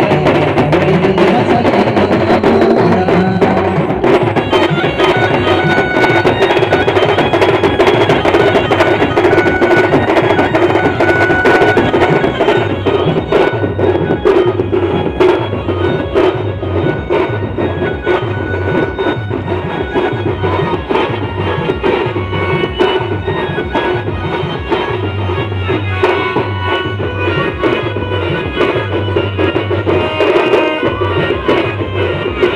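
Adivasi band music played live: large bass drums beaten with sticks keep a steady, driving rhythm under an electronic keyboard melody, amplified through loudspeakers.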